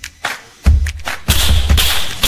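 Music with a thumping beat, then from about a second in a run of sharp hissing cracks, roughly two a second, from an airsoft pistol firing.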